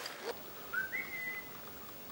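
A short whistle about a second in: a brief lower note, then a higher note that slides up and holds for about half a second before fading.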